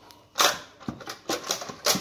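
Aluminium cylinder head of an Audi 2.0 TDI diesel being rocked loose and lifted off the engine block by hand: a quick string of sharp metal clunks and knocks, the loudest about half a second in and just before the end.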